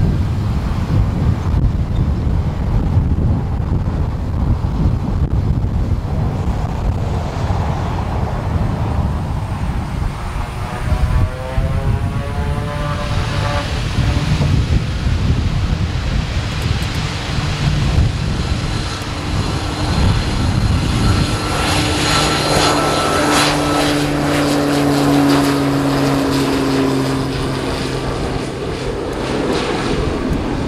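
Short 360's twin Pratt & Whitney Canada PT6A turboprops and propellers running at power for takeoff. The propeller noise swells about halfway through, with steady hum tones that sink slightly in pitch as the aircraft rolls past.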